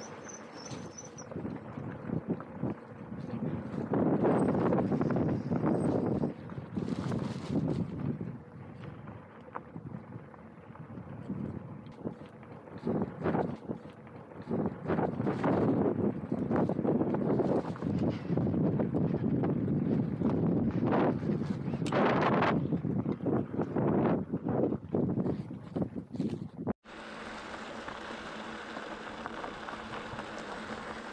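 Loaded touring bicycle rolling over a rough gravel track: tyres crunching on loose stones and the bike and its bags rattling and knocking irregularly, with wind buffeting the microphone. Near the end it cuts abruptly to a quieter, steady hiss.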